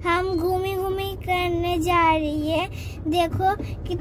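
A high voice singing long, slightly wavering held notes, with a short break about three seconds in, over the low steady rumble of a car cabin on the move.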